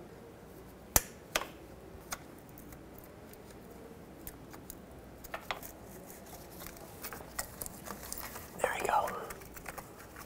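Plastic electrical connector of a knock sensor being unplugged and handled: one sharp click about a second in, then scattered light clicks and taps.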